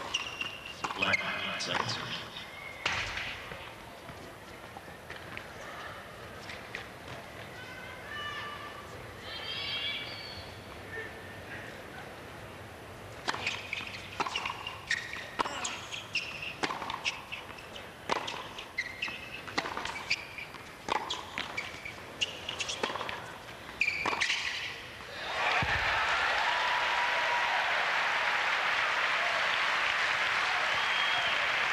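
Tennis ball being struck by rackets and bouncing on a hard court: a few hits in the first seconds, then a long rally with a sharp pop about every second. The rally ends about 25 seconds in with crowd applause rising suddenly and holding loud.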